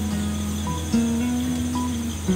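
Background music of slow, sustained notes over a steady bass, with a new note coming in about a second in. A steady high cricket trill runs underneath.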